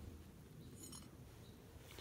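Near silence: faint room tone with a low rumble.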